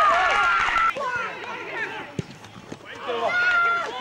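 Men shouting across an open pitch, long drawn-out calls for about the first second and again near the end, with shorter, quieter calls in between. A single sharp knock comes about two seconds in.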